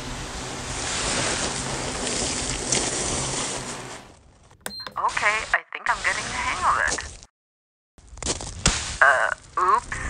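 Animation sound effects: a steady rushing noise for about four seconds, then, after a short lull and a single high blip, a run of warbling, voice-like sounds with a wavering pitch, cut by a brief total silence.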